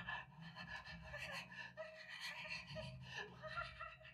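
A man's improvised vocalizing, breathed and voiced close into a microphone cupped in his hands, in short broken fragments.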